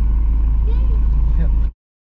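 A loud, steady low rumble with faint voices in it, which cuts off abruptly to silence near the end.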